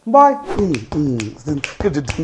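A man's voice ends a word, then about half a second in an outro jingle starts: a quick run of finger snaps over gliding, voice-like sounds.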